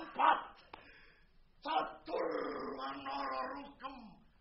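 A man's voice making wordless vocal cries: a short loud cry just after the start, then after a pause a sharp cry and a long held, pitched cry lasting over a second and a half that stops just before the end.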